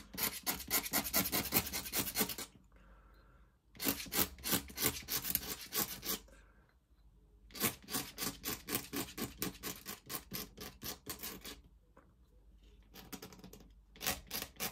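A thin inking tool scratching quick strokes across drawing paper, in three bursts of rapid scratches with short pauses between, the last burst the longest, and a few fainter strokes near the end.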